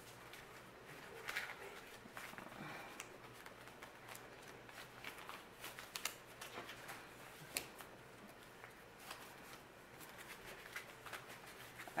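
Paper banknotes being gathered and shuffled together by hand: faint, scattered rustles and light flicks of paper.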